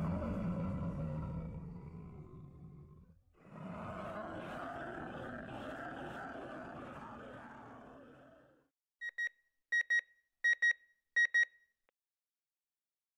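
Two stretches of a dark, noisy sound effect, each fading out, the first ending about three seconds in. Near the end come four quick double beeps from a digital, alarm-clock-like beeper.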